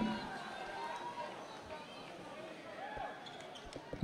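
Faint murmur of voices in a gym. Near the end a basketball bounces a few times on the hardwood court as the shooter dribbles before a free throw.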